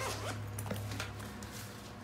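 Zipper on a North Face Access 22L backpack being pulled open, quietly, with light handling of the bag's fabric.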